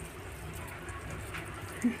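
Quiet, steady background noise with a faint short click about a second and a half in; a voice starts right at the end.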